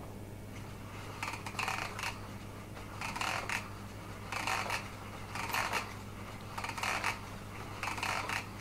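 Hand-cranked paper automaton running, its gear wheel turning against a thin plastic strip that makes a short clicking rattle roughly once a second, about six times, as the crank is turned.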